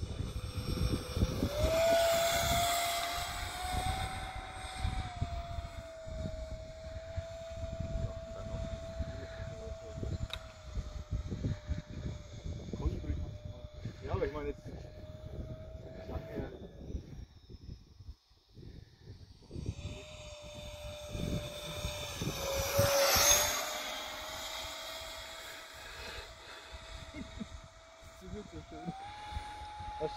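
Easy Iskra model jet's 50 mm electric ducted fan whining steadily in flight, with two louder fly-bys, one about two seconds in and the loudest about three-quarters of the way through. The whine steps up in pitch near the end as the throttle opens.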